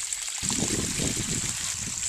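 Pumped feedlot wastewater gushing out of the open end of a lay-flat discharge hose and running over the soil, starting about half a second in.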